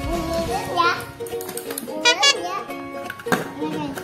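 A child's voice, rising in pitch twice, over steady background music, with a single knock a little after three seconds in.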